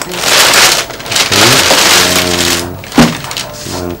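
Thin plastic carrier bag rustling and crinkling as goods are packed into it, in two bursts, with a brief voice sound over the second and a sharp knock about three seconds in.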